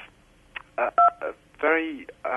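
A man's halting voice over a telephone-quality line, just a couple of hesitant syllables, with a short two-tone beep on the line about a second in.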